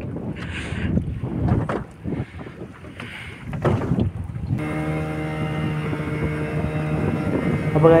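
Wind on the microphone on an open fishing boat, with scattered knocks and rustles as fish are hauled up on hand lines, and a brief laugh at the start. About halfway through, a steady low droning hum cuts in abruptly and holds.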